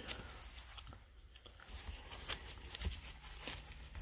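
Plastic card sleeves and top loaders being handled: scattered light rustles and clicks over a faint low hum.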